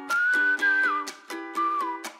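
Background music: a light, upbeat tune with a whistled melody over plucked-string chords and a steady beat.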